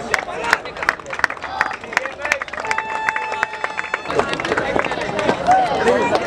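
Scattered hand clapping from a small audience, irregular claps through the whole stretch, with voices chattering.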